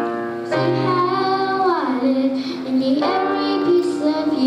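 A child singing long held notes while accompanying himself on a grand piano, one note sliding down in pitch about halfway through.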